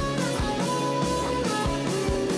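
Rock band music: guitar over a steady drum beat, with no singing.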